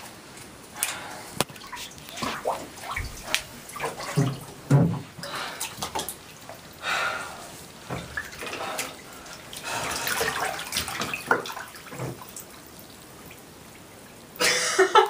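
Water sloshing and splashing in a partly filled bathtub as a person sits down and lies back in it, in a string of irregular splashes.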